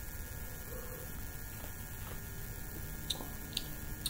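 Steady low electrical hum under a man sipping beer from a glass and swallowing, with two faint mouth clicks a little after three seconds in.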